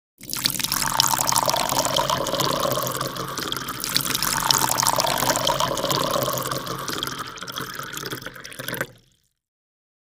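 Water splash sound effect: a rush of swirling, splashing water full of small drops and spatters. It eases off and stops abruptly about nine seconds in.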